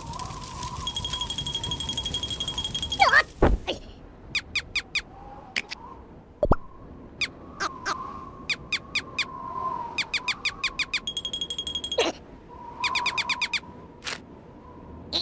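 Cartoon sound effects: runs of quick, high squeaks several times a second over a faint wavering hum, with a steady high beep for a couple of seconds near the start and again about eleven seconds in, and two dull thumps.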